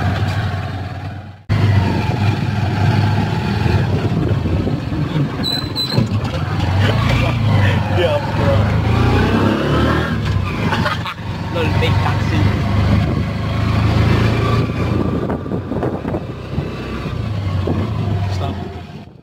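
Motorcycle tricycle engine running steadily, heard from inside the sidecar while riding, with voices talking over it. The sound cuts out briefly about a second and a half in.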